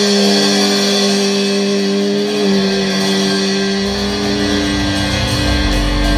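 Electric guitars letting the song's final chord ring out in a band rehearsal, held notes sustaining with one shifting pitch about halfway through. A low rumble builds in near the end.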